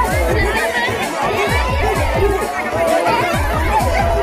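Quick, steady drumbeat for a circle dance, with many voices chattering and calling over it.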